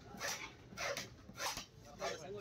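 A long knife slicing through a large katla fish's flesh against a wooden chopping block, three quick strokes about half a second apart.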